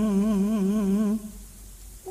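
A singer holding one long note with an even, wavering vibrato, part of a Banyumasan calung song, that ends about a second in.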